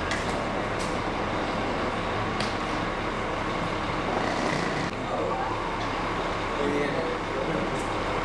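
Steady low hum of a lobby, with a few sharp clicks of footsteps and luggage in the first half and faint, indistinct voices from about halfway.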